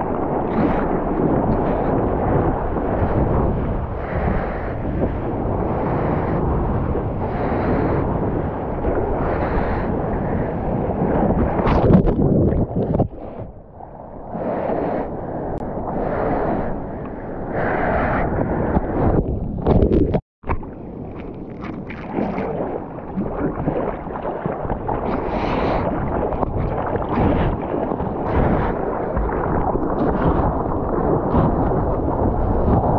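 Sea water rushing and splashing around a surfboard and its board-mounted action camera, with wind buffeting the microphone. The sound dulls briefly about a third of the way in and cuts out for an instant about two-thirds in.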